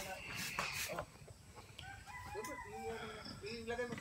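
A rooster crowing, fairly faint, in the second half.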